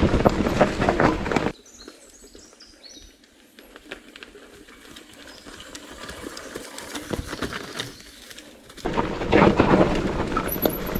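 Mountain bike riding down a rocky forest trail: a loud, rattling rush of tyres on dirt and stones, bike parts and wind close to the handlebars. After about a second and a half it drops to a much quieter forest background with a few high chirps, swelling slowly as a rider on the trail passes. The loud rattling ride noise comes back shortly before the end.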